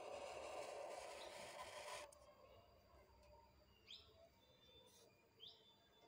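Near silence: a faint hiss that stops about two seconds in, then three short, faint rising chirps, like a small bird calling.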